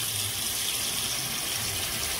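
A steady, even rushing noise with no breaks, of the kind running water or a fan makes.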